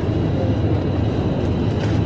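Steady low hum and rumble of supermarket background noise from the refrigerated freezer cases and store ventilation, with a faint steady high-pitched whine above it.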